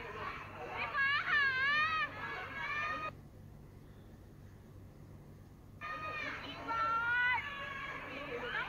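High-pitched, excited voices whose pitch sweeps up and down, with no words made out. They fall away for about three seconds near the middle, leaving only a faint low hum, then start again.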